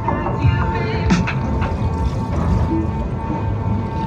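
Loud fairground music from the ride's sound system, with the rumble of a Pollard flying coaster ride running underneath.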